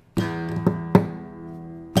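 Takamine acoustic guitar played percussively: a palm thump with a nail strike across the strings sounds a ringing chord with a bass-drum-like hit. Two quick finger taps follow while the chord rings, and a second thump lands near the end.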